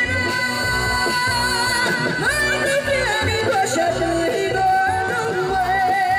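A woman singing through a microphone and PA over loud amplified music with a steady beat. She holds one long note through the first two seconds and another from about the middle to the end.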